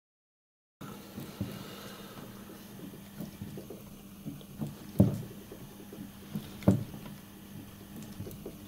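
Faint workshop background with a steady low hum and scattered light clicks and knocks, two sharper knocks about five and nearly seven seconds in; the sound cuts in after a moment of silence.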